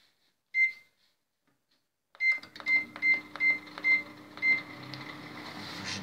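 Microwave oven beeping as it is set for three minutes: one short high beep about half a second in, then a quick run of six beeps about two seconds in. The oven then starts running with a steady hum.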